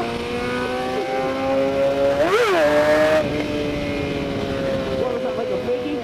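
Sport motorcycle engine running at steady cruising revs, its pitch sagging slowly, with one quick throttle blip about two seconds in where the pitch shoots up and drops straight back, along with a short burst of rushing noise.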